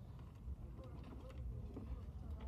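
A low, steady rumble with faint voices in the background and a few light clicks.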